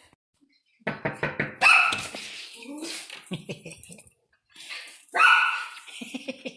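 A miniature schnauzer barking, with loud barks about two seconds in and again about a second before the end, among bursts of a woman's laughter and voice.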